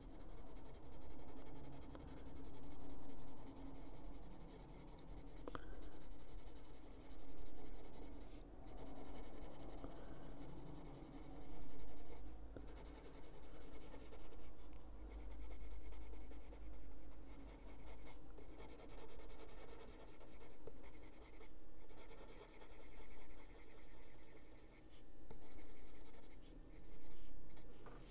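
Coloured pencil (Caran d'Ache Luminance, cobalt green) shading on paper, a soft scratching in repeated strokes that swell every second or two.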